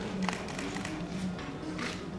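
Music with low held notes and short, sharp percussive hits recurring about every half second.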